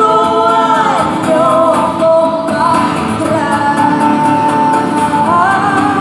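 Live pop-rock song played through an arena sound system: a female singer holding long notes with sliding falls between them, over a band with guitar.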